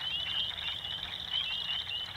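Chorus of frogs at night: many short, high peeping calls overlapping in a steady, unbroken din.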